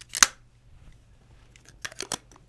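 Bronica ETRSi medium-format camera being handled: one sharp mechanical click a quarter-second in, then quiet handling and a couple of lighter clicks near the end as the lens comes off the body.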